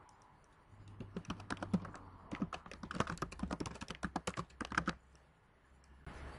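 Typing on a computer keyboard: a quick, uneven run of key clicks starting just under a second in and stopping about a second before the end.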